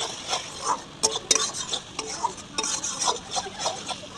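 Flat metal spatula scraping and stirring onion-tomato masala around a dark iron kadai in quick, irregular strokes, about three a second, with the paste sizzling in the oil as it is fried down.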